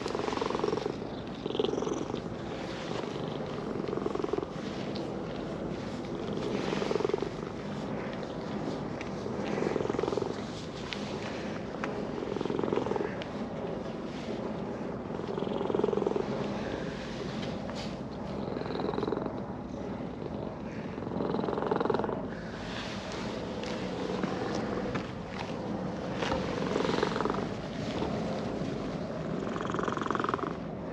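Orange-and-white cat purring steadily while being stroked on the head and chin, a sign of contentment. The purr swells in loudness about every three seconds.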